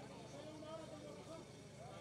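Faint, low-level voices of people talking in the background, with no thud or click of boules.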